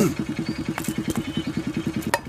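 Motorcycle engine idling, heard at the exhaust as a rapid, even putter of low beats.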